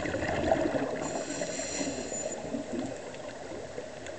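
Underwater scuba breathing through a regulator: a gurgle of exhaled bubbles, then a hissing inhalation with a thin whistle from about one to two seconds in.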